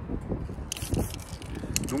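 An aerosol spray-paint can being handled: a brief hiss about two-thirds of a second in, then a quick run of clicks and rattles as the cap comes off, over wind rumbling on the microphone.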